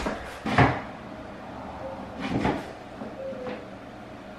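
A few short knocks and thumps: a sharp one about half a second in, a couple more around the middle, and a fainter one later.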